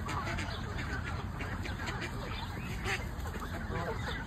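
A flock of Canada geese and ducks calling: many short calls overlapping one another, over a steady low rumble.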